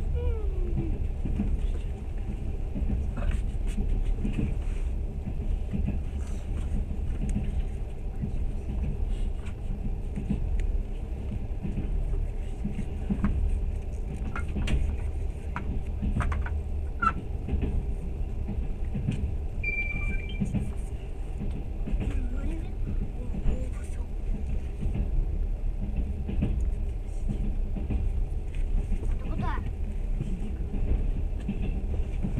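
Steady low rumble inside a standing train carriage, with faint, indistinct voices and occasional small knocks.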